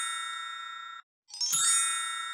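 A bright, ringing chime sound effect fades away and cuts off about a second in, then the same chime sounds again a moment later and begins to fade.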